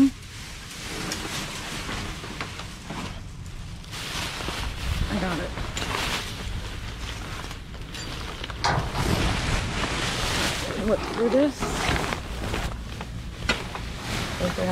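A thin plastic trash bag rustling and crinkling as it is pulled from a dumpster with a grabber tool and carried along, with steady handling noise throughout.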